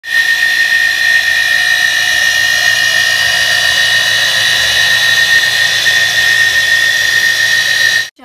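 Electric Jetmatic shallow-well jet pump running with a loud, steady, high-pitched whine. The owner thinks it is likely just worn bearings.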